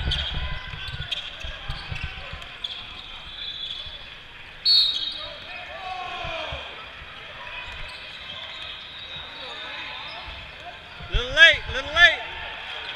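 A basketball being dribbled on an indoor court, with sneakers squeaking against the floor, loudest in a quick cluster of squeaks near the end, over the voices of players and spectators in a large echoing hall.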